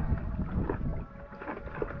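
Water sloshing and splashing around a swimmer in the sea, with a few short splashes and wind buffeting the microphone.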